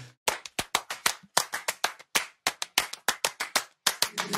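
Rhythmic hand claps, about six a second in a steady syncopated pattern, with no singing under them: the percussion lead-in of the a cappella song.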